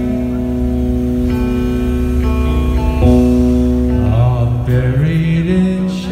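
Live rock band playing a slow song, with held chords on electric guitar and a chord change about halfway through. A voice sings briefly near the end.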